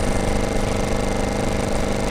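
A motor running steadily at an even pitch, with no change in speed.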